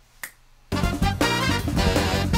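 A single finger snap, then loud music with a steady beat starts under a second in.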